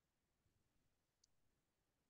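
Near silence: digital silence on a video-call recording.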